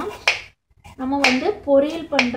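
Kitchen knife slicing a Brussels sprout on a wooden cutting board: sharp taps of the blade on the board, about three, over a voice talking.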